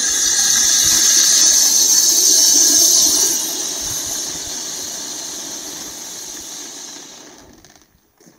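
Vulcan Fire Sphinx Volcano ground fountain firework spraying sparks with a steady high hiss. About three seconds in, it starts to fade and dies away almost to nothing as the fountain burns out.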